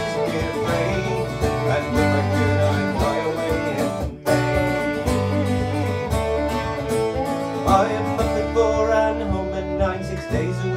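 Live acoustic folk trio playing: fiddle, strummed acoustic guitar and mandolin together, with a brief dropout about four seconds in.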